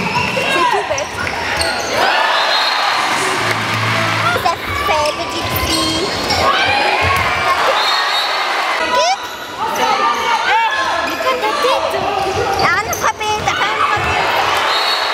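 Handball being played on an indoor court: shoes squeaking repeatedly on the sports-hall floor, the ball bouncing, and voices of players and crowd throughout.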